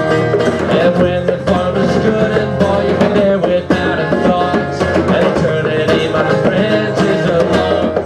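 Live acoustic music: an acoustic guitar strummed steadily, with a man singing.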